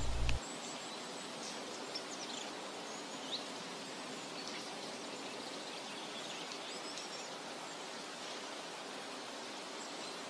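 Faint outdoor ambience: a steady soft hiss with a few brief, faint bird chirps.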